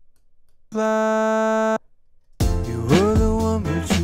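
A vocal note auditioned in Melodyne: a steady held tone with no vibrato, sounding for about a second after a short silence. About two and a half seconds in, playback of the song starts: a sung vocal over a backing track, the voice sliding up into its notes.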